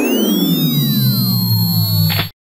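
Synthesized laser-beam sound effect: a cluster of electronic tones that have swept down in pitch settles into a loud, low steady hum with thin high tones above it.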